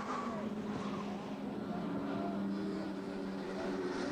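Touring car racing engines running at speed, a steady high engine note.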